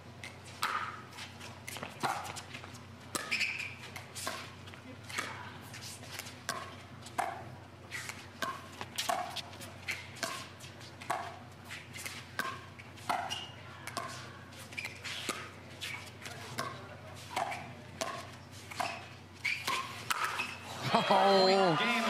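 A long pickleball rally: paddles hitting the plastic ball, a sharp pop with a short ring about once or twice a second, the soft back-and-forth of a dinking exchange at the net. Near the end, louder voices break in as the rally ends.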